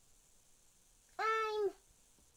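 A single short meow-like call a little over a second in, held on one steady pitch for about half a second.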